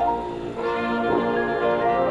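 High school marching band playing held brass chords. The sound thins briefly about half a second in before the chords come back in.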